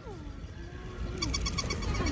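Battery-operated toy puppy giving out its electronic sound: a rapid, even run of short high beeps, about eight a second, starting about halfway through.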